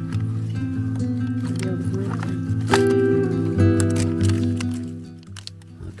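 Background music of held, sustained chords, moving to a new chord a little under three seconds in and fading somewhat near the end.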